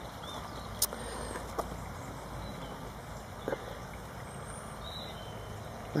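Faint outdoor background: a steady low rumble with a few soft clicks and some faint, high chirps.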